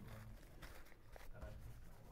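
Faint scratching of a marker writing on a whiteboard, a few short strokes over quiet room hum.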